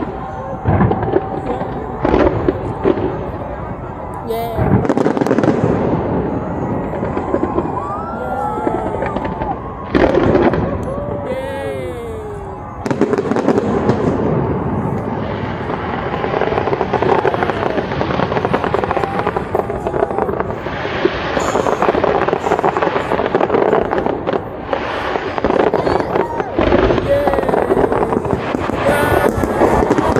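Large fireworks display with shells bursting one after another, many bangs with hardly a pause. Crowd voices run underneath.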